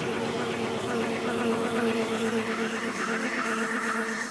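A steady buzzing drone with a held low hum: the dark ambient drone of a film score.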